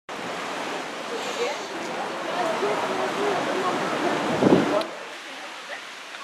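Steady rush of wind and sea surf, with faint indistinct voices under it. About four and a half seconds in, a gust buffets the microphone, and after it the rushing drops to a lower level.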